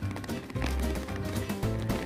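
Background music with a regular beat.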